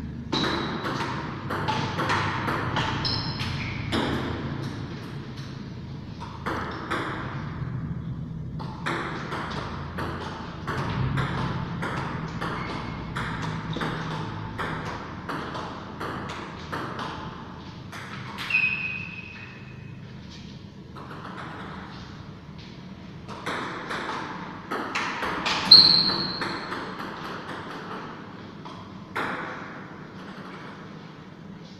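Table tennis rallies: the ball clicking back and forth off the rackets and table in quick runs, with short pauses between points. A few brief high-pitched squeaks come through, the loudest late on.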